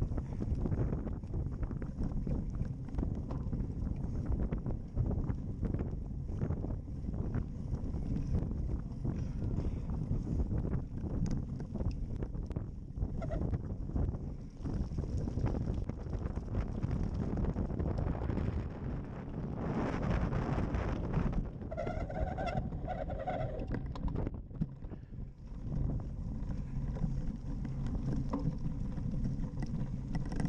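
Wind buffeting the microphone of a camera on a cyclocross bike ridden over bumpy grass, with the bike rattling and knocking over the rough ground. About two-thirds of the way through, a short pitched sound rings out for about two seconds.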